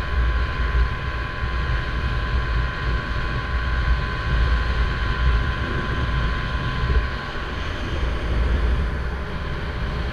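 Small boat's motor running steadily while the boat is underway, a continuous drone with a thin steady whine that fades about seven seconds in, over a heavy low rumble of wind and water.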